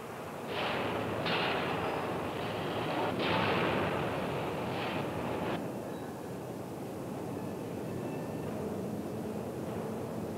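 Steel rolling mill machinery running as a hot bloom is rolled. A dense industrial din surges several times in the first half, then settles into a steadier, lower mill noise.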